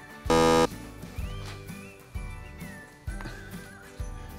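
Background music with a steady beat. About a third of a second in, a short, loud buzzer sound effect cuts in and stops abruptly after about a third of a second.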